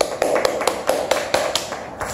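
Handling noise from a hand-held camera as it is moved: a quick, uneven run of light taps and knocks, about a dozen in two seconds, over a muffled rumble.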